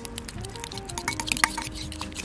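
Light background music with a melody, over a metal fork clicking and scraping against a ceramic bowl in quick, irregular strokes as quark and food colouring are stirred together.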